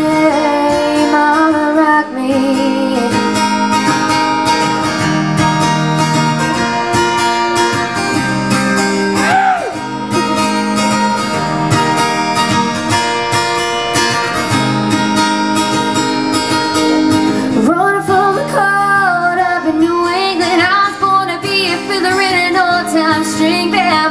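Steel-string acoustic guitar strummed in a steady rhythm through an instrumental break. A female voice sings briefly around the middle and comes back over the strumming for the last several seconds.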